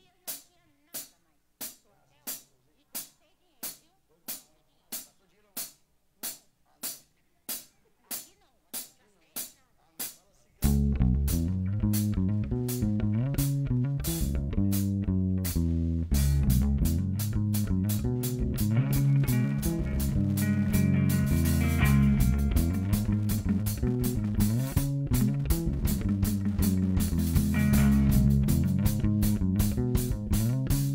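Steady clicks keeping time, about three every two seconds, for some ten seconds, then a rock band comes in loud all at once: electric guitars, bass guitar and drum kit playing an instrumental, with the cymbals getting busier about halfway through.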